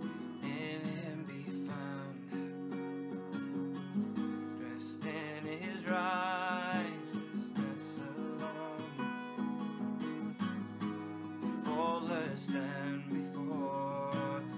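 A man singing a slow worship song to his own strummed acoustic guitar, the voice coming in phrases over steady chords.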